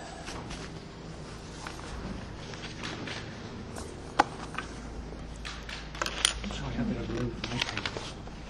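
Scattered sharp clicks and knocks of handling over a steady low room hum, more of them near the end, with faint murmured voices about three-quarters of the way through.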